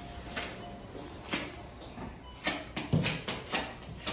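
Footsteps on a hard tiled floor: a few spaced steps, then quicker steps in the second half, with one heavier knock about three seconds in.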